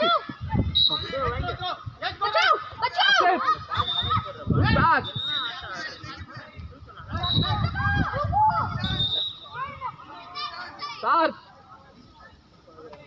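Voices calling and shouting on and around the pitch during a youth five-a-side football match, with children's voices among them. Now and then there is a low rumble, and it quietens near the end.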